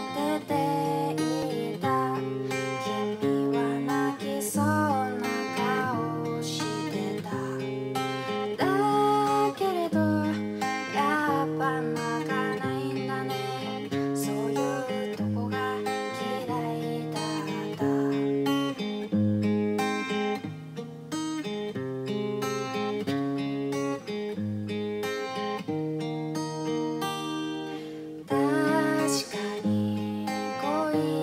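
Woman singing a Japanese pop ballad to her own strummed steel-string acoustic guitar, played with a capo, in a steady chordal rhythm.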